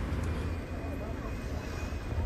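Steady low rumble and street noise, with faint voices in the background.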